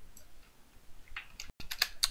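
A quick run of computer mouse and keyboard clicks, starting a little over a second in.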